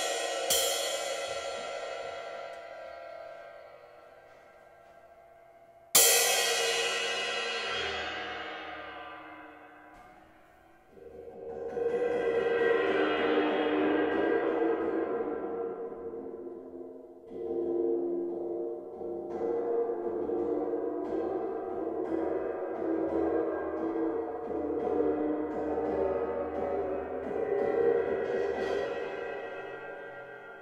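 Big jazz ride cymbal struck twice with a drumstick, each stroke ringing out and dying away. From about eleven seconds in, the cymbal gives a long swelling ring that comes and goes as it is lowered toward a tub of water, the water being used to bend its pitch.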